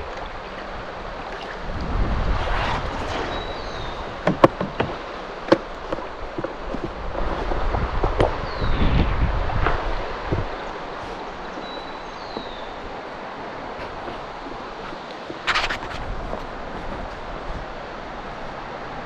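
River water rippling and lapping around a moving canoe, with wind buffeting the microphone a couple of times. A few sharp knocks sound early on and another near the end. Short falling bird chirps come now and then.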